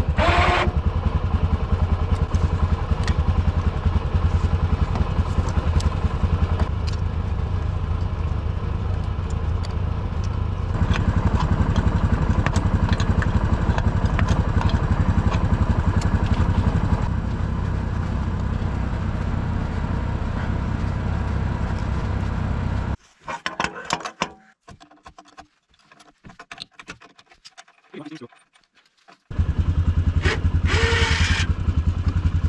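Red 4x4 ATV engine idling steadily, with the metal height adjuster of a homemade snowplow blade being worked by hand. About 23 seconds in the engine sound drops away for several seconds, leaving only scattered clicks and knocks, then the idle returns.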